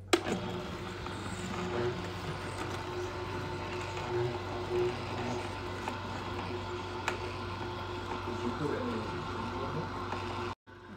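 Vertical slow (masticating) juicer switched on, its motor starting suddenly and then running with a steady hum as the auger presses a full hopper of fruit into juice. A sharp click about seven seconds in.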